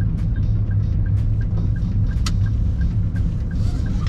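Car cabin rumble from the engine and tyres while driving in traffic, a steady low drone, with a faint, even ticking about three times a second.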